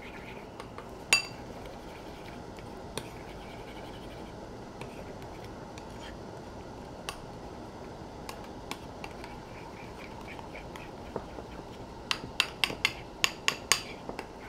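Metal teaspoon stirring horseradish into crème fraîche in a small ceramic bowl. There are occasional light clinks against the bowl, one ringing about a second in, then a quick run of clinks, about five a second, in the last two seconds, over a steady low background noise.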